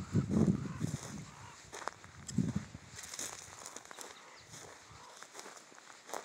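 Footsteps on dry grassy ground and brush as someone walks with the camera, with low bumps near the start and about two and a half seconds in, and a few short clicks.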